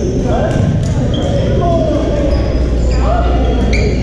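Badminton play in a large, echoing gym: racket hits and footfalls on the wooden court, with short high squeaks of shoes, over a steady din of voices from the surrounding courts.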